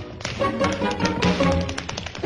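Rapid, irregular taps of tap shoes on a stage floor in a dance break, over softer music.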